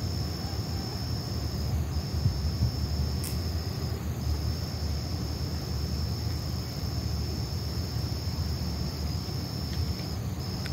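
Crickets trilling steadily in a high, continuous chorus that breaks off briefly a few times, over a low rumble, with a single click about three seconds in.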